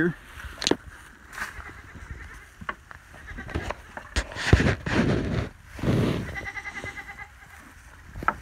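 Holstein heifers pulling at and eating hay in a wooden feeder: rustling hay, snuffling and scattered knocks, with the loudest rustle about halfway through. A brief faint buzzing tone comes just after six seconds.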